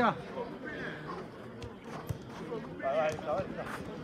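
Players calling out across a five-a-side football pitch, with a short shout about three seconds in. A few short knocks of the ball being played on artificial turf.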